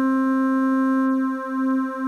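Modal Argon 8M wavetable synthesizer holding a single steady note from one oscillator. About halfway through, its Spread control starts adding detuned unison oscillators, and the note begins to beat, swelling and dipping about twice a second.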